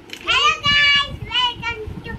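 A young child's high voice singing or vocalising in a sing-song way, with one note held for about half a second near the start.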